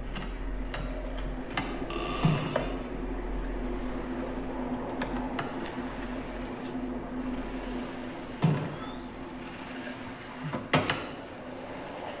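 A low steady drone of the film's ambient score, over which a glass-fronted display cabinet door is handled and opened, with scattered clicks and knocks. There is a louder knock about two seconds in, a brief rasping sound about eight and a half seconds in, and another knock near eleven seconds.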